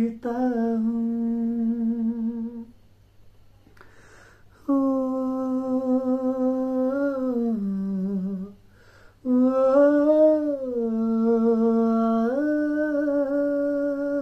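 A man humming a melody unaccompanied, in three long held phrases that slide between notes, with short breaths between them.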